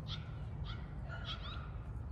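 A bird calling in short, repeated chirps about twice a second, with a quicker run of chirps a little past the middle, over a steady low rumble.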